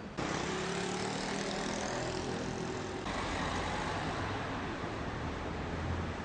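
Road traffic on a busy city street: cars passing with a steady mix of engine hum and tyre noise, one engine rising in pitch over the first few seconds as it pulls away.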